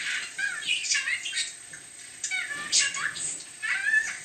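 Budgerigar chattering and warbling: a fast run of short chirps and gliding notes, with a brief lull about halfway through before the chatter picks up again.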